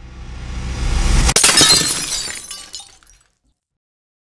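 Logo-sting sound effect: a rising swell builds for about a second and a half into a sharp hit with glass shattering, and the bright tinkling debris fades out about three seconds in.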